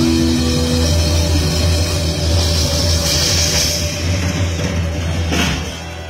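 Live rock band with drum kit, electric bass and guitars playing sustained chords over a steady bass. A cymbal crash comes near the end as the sound falls away.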